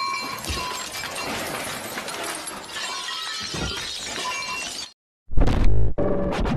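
Film soundtrack with continuous crashing, shattering noise. It cuts off about five seconds in, and after a brief silence a loud burst begins a TV channel ident near the end.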